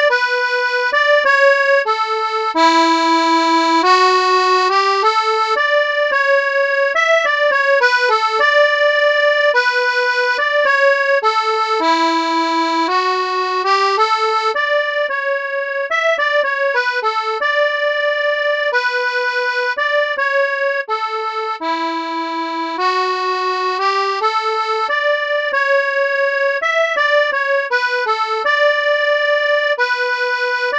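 Synthesizer accordion patch played from a keyboard: a single-note riff melody with quick ornamental grace notes, the phrase repeating about every ten seconds.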